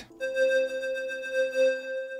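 Roland Juno-60 analog synthesizer lead one-shot sample sounding a single held note. The note starts just after the beginning and stays steady, its level wavering gently.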